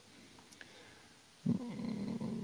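Near silence, then about a second and a half in, a man's low, steady hum begins.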